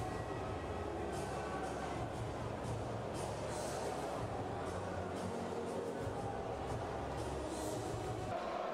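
Ice hockey game sound from the rink: a steady low rumble of the arena with a few brief hissing scrapes, such as skates on the ice.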